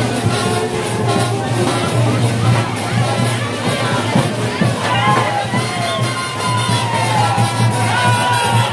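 A Colombian brass street band plays porro to a steady percussion beat, with crowd voices mixed in. Several long falling tones stand out over the music in the second half.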